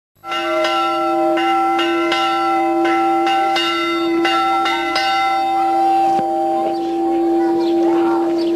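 Church bell rung by hand with a rope, struck about two times a second for the first five seconds. After that the bell is left ringing on with hardly any new strikes.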